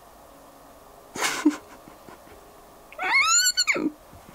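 A short breathy burst, then near the end one high-pitched cry that rises and then falls in pitch, under a second long.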